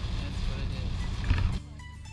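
Road and engine rumble inside a vehicle cab driving on a wet road in rain, with faint, indistinct voices. It drops away sharply about a second and a half in.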